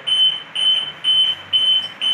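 Alarm buzzer beeping rapidly: short, high, same-pitched beeps, about three a second. It is the AC-source-fail alarm, sounding because the UPS's mains supply has been switched off.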